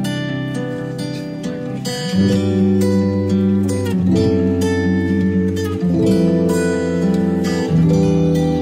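Background music led by plucked acoustic guitar, its chords changing about every two seconds over a low sustained bass.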